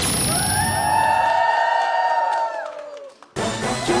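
Game-show music sting as the song roulette lands: a bright held chord that fades out after about three seconds. A burst of studio crowd noise follows near the end.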